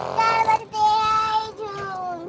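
A high-pitched human voice, a child's, singing or calling in drawn-out notes that slide up and down in pitch, with a short burst of noise at the very start.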